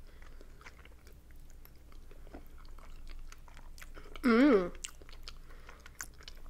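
Close-miked chewing of soft boiled dumplings: faint wet mouth clicks and smacks. About four seconds in comes one short, loud hummed "mmm" that wavers in pitch.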